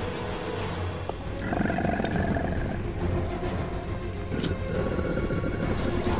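Tense film score with a steady low drone, mixed with a low creature growl from the giant snake; held tones swell about a second and a half in.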